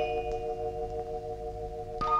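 Background film music: a held chord of soft, bell-like tones, with a struck note ringing on and slowly fading. A new note comes in right at the end.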